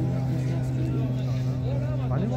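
Men's voices talking among the onlookers over a steady, low, engine-like hum.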